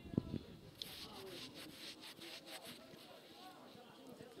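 Faint pitch-side ambience of a football match: distant players' voices calling over a low hiss, with a short thud just after the start.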